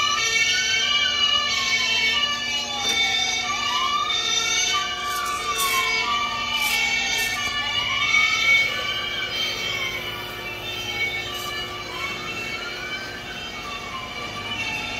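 Electronic siren from a radio-controlled miniature fire-department SUV's sound module, played through its small speaker. It is a wail that rises quickly and falls slowly, about four times, over steady beeping tones, and grows a little fainter in the last few seconds as the toy drives away.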